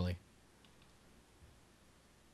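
The end of a man's speech, then near silence with a few faint clicks.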